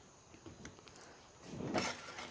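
Mostly quiet with a few faint ticks, then near the end a flat metal spatula starts stirring sugar into thickened milk in a kadhai, a short burst of stirring noise.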